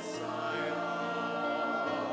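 Church choir singing a slow hymn, with long held notes.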